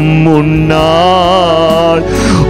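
A man singing a Tamil worship song into a microphone, a few short notes and then one long held note with a slight vibrato in the second half.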